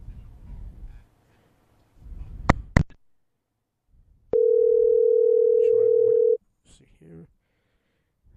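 Telephone call tone: one steady, loud tone lasting about two seconds, starting a little past the middle, after two sharp clicks.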